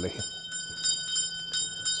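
A small hanging house bell of the servants' call kind ringing loudly, its clapper striking over and over, about three strikes a second, with the ring carrying on between strikes.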